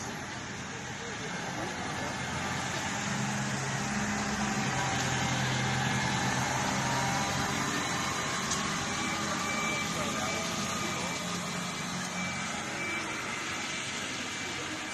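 A tractor's diesel engine drives past on a wet street, its low drone swelling for a few seconds and then fading, over steady street noise.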